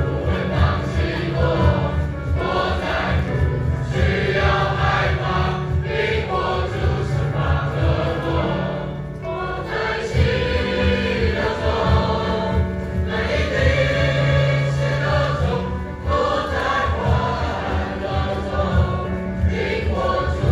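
Mixed school choir of boys and girls singing a hymn together, with steady low notes sounding beneath the voices; the singing dips briefly between phrases twice.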